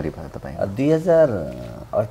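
A man's voice in conversation, with one long drawn-out syllable about a second in that rises and then falls in pitch.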